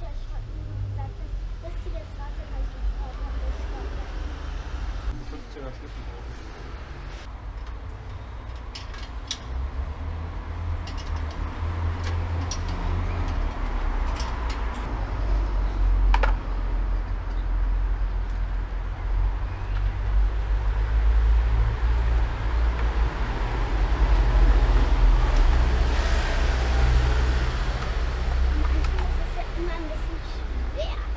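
Street background with a low traffic rumble that grows louder through the second half, and one sharp click about sixteen seconds in.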